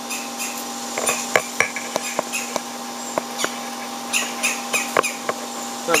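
A bird, taken for a jay, chastising the cat with short, sharp calls repeated at irregular intervals: alarm calls at a predator. A steady hum runs underneath.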